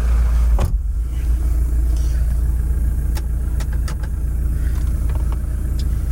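A car door shuts with a thump about half a second in. Then comes a steady low rumble from inside the cabin of a Toyota Fortuner with its engine idling, with a few light clicks as he settles in the driver's seat.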